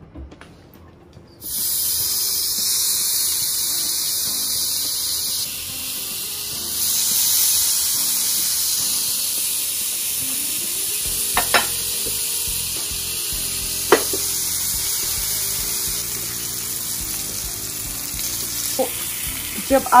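Marinated paneer skewers sizzling on a hot grill pan. The sizzle starts suddenly about a second and a half in, as the paneer goes onto the pan, and then runs on steadily, with two sharp clicks midway.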